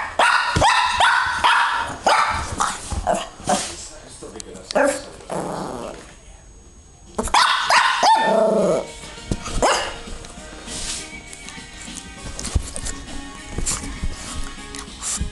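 Young Petit Brabançon barking and yapping in play, in bursts over the first two seconds and again about halfway through, with quieter scuffling between.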